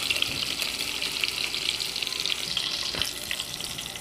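Chopped onion frying in dendê palm oil in a metal pan, a steady sizzle with light crackling as the onion browns.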